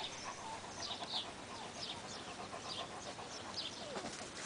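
Birds chirping faintly, many short high chirps repeated throughout.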